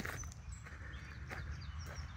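Quiet outdoor background: a steady low rumble with a few faint, short high chirps and a soft knock a little past halfway.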